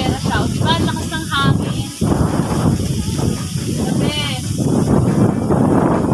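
Wind buffeting the microphone in a continuous low rumble. Over it come high, wavering calls: a string of them in the first second and a half and another about four seconds in.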